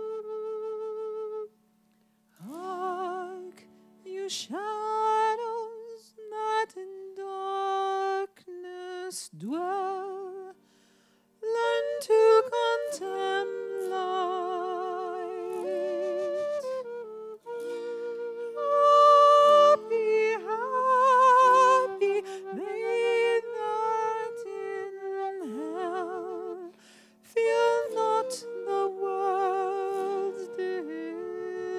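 Live folk music: a woman singing a melody with wide vibrato and upward scoops into notes, together with a wooden end-blown flute, over a steady low drone. The phrases are separated by two brief pauses in the first third.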